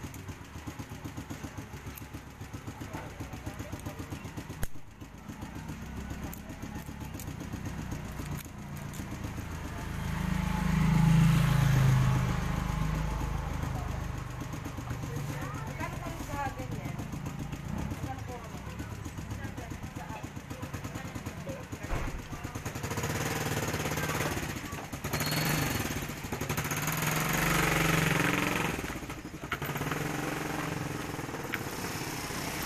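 Small motorcycle engine idling with a steady rapid beat, growing louder twice. This is the engine's sound before it is treated with an oil additive.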